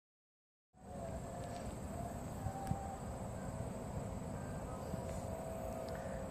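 Dead silence for a moment, then, from about a second in, outdoor ambience dominated by wind rumbling on the microphone, with a faint steady hum underneath.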